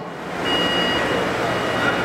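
City street background noise: a steady traffic hiss and rumble, with a thin high steady tone that comes in about half a second in and fades by the one-second mark.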